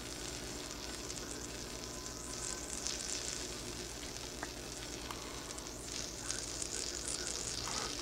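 Water sizzling and boiling on a stainless steel plate heated from below by the flames of a nine-tip HHO (oxyhydrogen) burner. It is a steady hiss with a few faint ticks, over a low hum.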